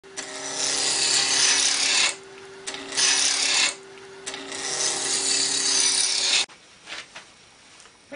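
A turning tool cutting a small wood blank spinning on a lathe, in three passes: a two-second cut, a short one about three seconds in, and a longer one that stops abruptly about six and a half seconds in. A steady hum from the running lathe lies underneath.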